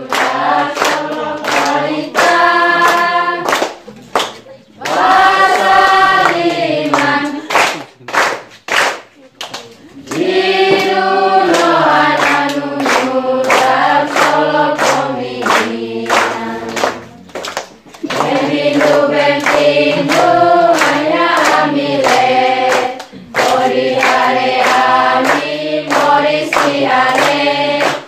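A group of children and young people singing together and clapping in time. The singing pauses briefly twice while the clapping keeps going.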